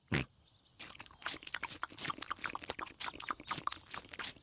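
Cartoon sound effect of two piglets munching strawberries: a quick, irregular run of wet chewing and crunching clicks starting about a second in.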